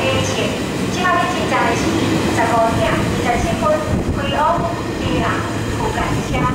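Locomotive-hauled passenger coaches rolling past a station platform as the train pulls out, with a steady rumble of wheels on the rails. A voice is heard over it.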